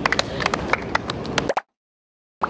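A few people clapping in quick, uneven claps, then the sound cuts off abruptly to dead silence about one and a half seconds in.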